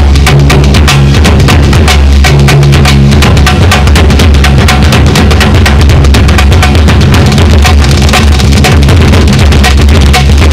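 Dance music led by fast, even drum strokes, several a second, over steady low sustained notes, loud and unbroken.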